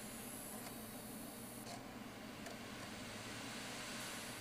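Steady low hum and hiss of a running desktop computer while it reads a CD, with no distinct clicks or other events.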